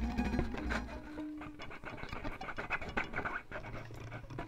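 Violin played through effects in a free improvisation, with extended techniques: dense scratching and clicking string noises, a low hum at the start and a short held tone in the middle.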